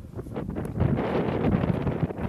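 Wind buffeting an outdoor microphone: an irregular low rumble that grows stronger about half a second in.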